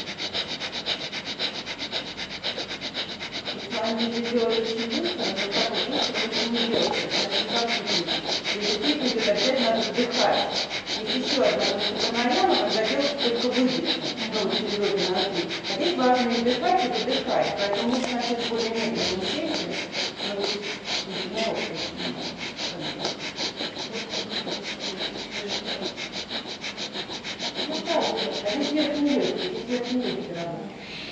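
Rapid, forceful breathing through one nostril at a time, the other held shut by hand: fast anulom vilom (alternate-nostril) pranayama. Each breath is a short, sharp rush of air through the nose, repeated in a fast, even rhythm.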